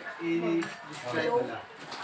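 Dishes and cutlery clinking at a set table, a few short sharp clinks.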